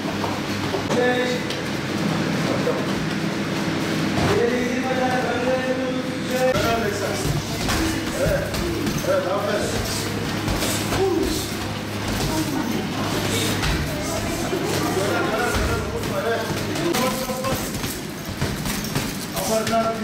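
Voices talking and calling out, with occasional thuds of kicks and punches landing on heavy punching bags. A steady low hum lies under it until about halfway.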